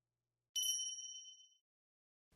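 A single high, bright ding: a chime sound effect at a scene change, struck about half a second in and fading out within about a second.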